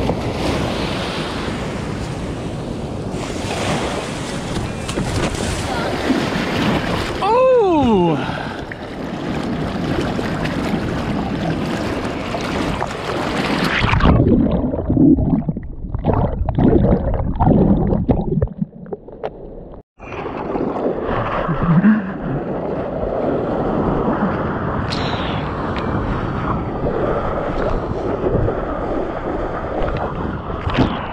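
Seawater splashing and rushing around a mouth-mounted action camera as a bodyboarder paddles out, with wind on the microphone and a short falling tone about a quarter of the way in. About halfway through, the camera dips underwater and the sound turns muffled and surging, then opens up again as it surfaces.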